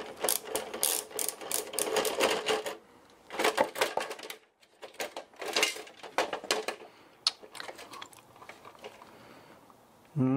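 Screwdriver working screws and a small motor being pulled out of a plastic printer chassis: irregular clicks, ticks and plastic clatter, dense in the first three seconds, coming in bursts up to about seven seconds in, then sparse.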